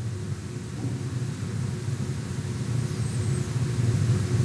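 Steady low hum of background room noise, with no speech.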